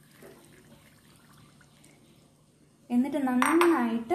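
Pomegranate juice poured from a bowl onto a plate of powdered sugar, a faint liquid pour. About three seconds in, a voice begins.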